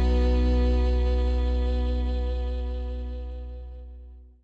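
Background country music ending on a held guitar chord that fades steadily away.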